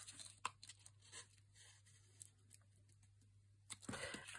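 Near silence, with a few faint, soft taps and rustles of a small paper tag being handled, mostly in the first second or so.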